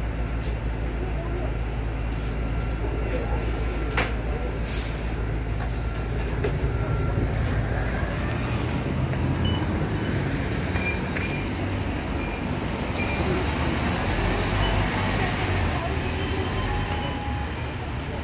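Linkker LM312 electric bus standing at a stop: a steady low hum from the bus, one sharp click about four seconds in, and a few short high beeps later on.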